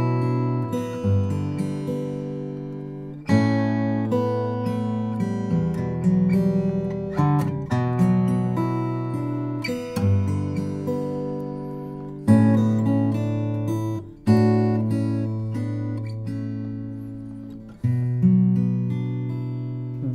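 Acoustic guitar playing a four-chord progression in B minor (B minor, G, A, E minor), mixing strums with thumb-picked bass notes in a fingerstyle pattern. Each new chord opens with a loud strum that rings and slowly fades, with softer picked notes in between.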